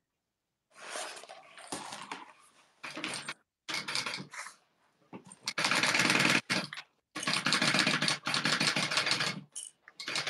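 Industrial sewing machine stitching a seam in several short runs, each a fast, even rattle of stitches. Softer, uneven sounds come first, and the loudest, longest runs come in the second half.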